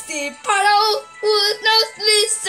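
A child singing a string of short, high notes in a sing-song voice, over soft steady background music.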